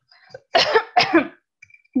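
A woman coughing: a quick run of about three harsh coughs, starting about half a second in and over by just past a second.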